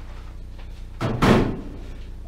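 A plastic beer fermenter keg holding sanitizing solution set down into a stainless steel sink about a second in: one loud thud that fades over about half a second.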